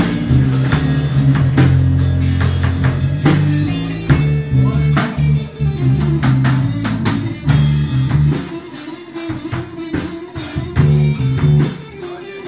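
Live band playing instrumentally: drum kit, electric bass and electric guitar. About eight seconds in, the bass drops out and the playing gets quieter, leaving guitar and drums.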